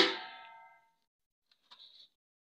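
A steel cooking vessel clanging once, struck at the very start, its ringing fading out over about a second.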